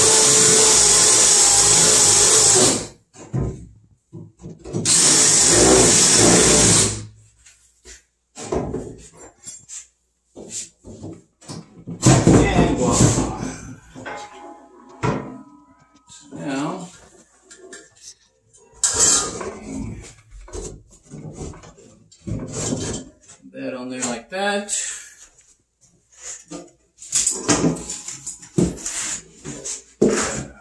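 Cordless drill running in two bursts of two to three seconds each, drilling holes into the wooden sides of a plywood crate. Afterwards come irregular knocks and handling clatter.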